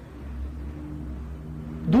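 Low steady hum and rumble of the room or recording between a speaker's sentences.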